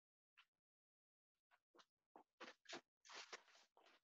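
Faint scattered knocks and clicks of a person moving about a room and handling things, with a brief rustle near the end.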